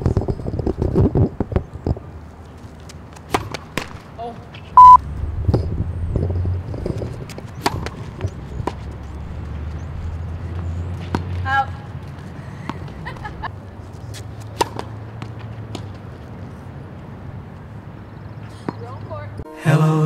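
Tennis balls struck by rackets and bouncing on a hard court during a rally: sharp, irregular pops a second or more apart over a low steady hum. A short, loud beep cuts in about five seconds in, and music starts just before the end.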